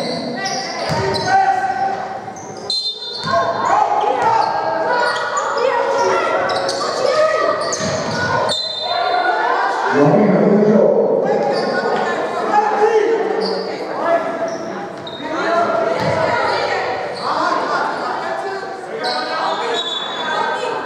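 A basketball bouncing on a hardwood court in a large gym hall, several sharp bounces over the stretch, under the calls and shouts of players and coaches during play.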